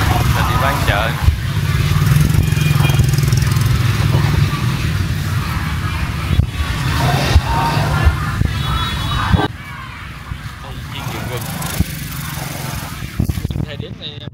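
Busy covered-market ambience: the voices of vendors and shoppers over a loud low engine-like rumble that cuts off suddenly about two-thirds of the way through.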